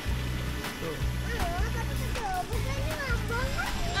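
Background music with a steady bass line that stops and restarts, and a melody that glides up and down over it. A short word is spoken about a second in.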